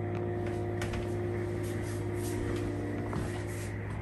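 Rain on the roof, a steady hiss with faint scattered patter, over a low steady hum.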